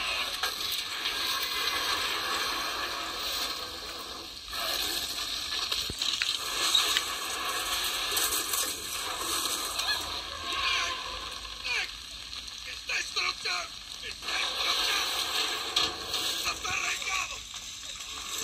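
Film soundtrack heard from a TV: steady heavy rain, with a child screaming and short cries about halfway through and again near the end.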